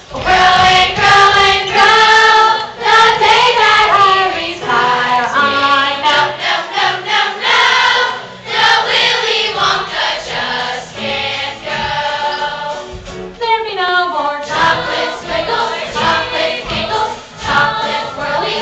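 A chorus of children singing a stage-musical song together, loud and continuous, with only brief breaths between phrases.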